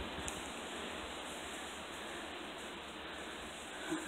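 Steady wind buffeting a phone's microphone, with faint rustling.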